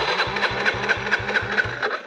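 Dirt bike engine chugging slowly, about five beats a second, as it bogs down in soft sand, then cutting out abruptly near the end: the engine stalls.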